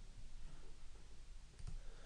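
Faint computer mouse clicks, one near the start and another late on, as a dialog is confirmed, over low room hum.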